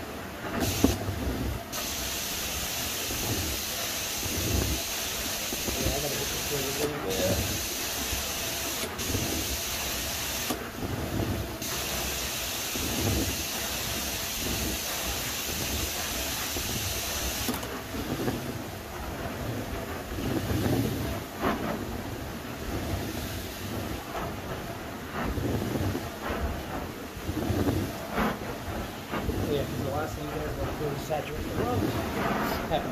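Carpet extraction wand working a carpet: a loud spray hiss with several brief breaks as the trigger is let off, stopping about two-thirds of the way through. After that only the wand's vacuum suction is heard, drawing water out of the carpet on dry passes.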